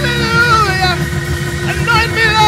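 A voice crying out in long, drawn-out falling tones over sustained keyboard chords.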